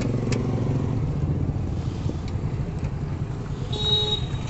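A motor vehicle's engine running close by, a steady low rumble that thins out after about a second and a half, with a short high tone near the end.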